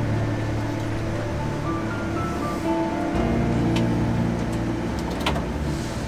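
Massey Ferguson 8S.305 tractor's six-cylinder diesel engine running steadily, heard from inside the cab, with background music over it.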